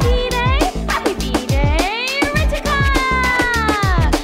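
Upbeat birthday-song music with a steady beat of deep, pitch-dropping drum hits and ticking percussion, under a lead of sliding, gliding notes.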